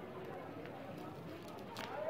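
Faint crinkling of a clear plastic protective film being peeled off a motorcycle helmet visor, with one sharper crackle near the end.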